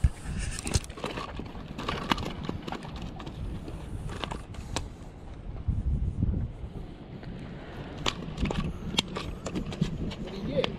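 Footsteps and handling noises: irregular clicks, knocks and low thumps as the angler moves about on the path and grass with a fishing rod.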